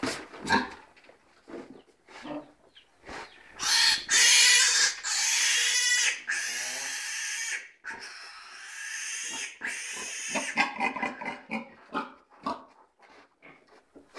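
An animal squealing loudly and harshly in a run of long calls from about four seconds in until about ten seconds in, loudest at the start, with shorter scattered sounds before and after.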